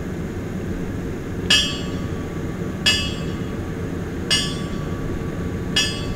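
Memorial bell tolled in slow single strokes, about one every second and a half, four strokes in all, each ringing on briefly, over a low steady rumble.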